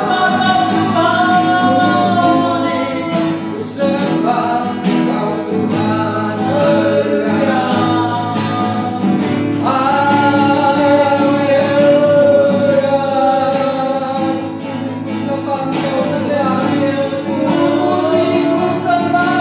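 A man singing a slow Indonesian worship song to his own acoustic guitar, with a woman singing along. The sung lines are long held notes, and a new phrase begins about halfway through.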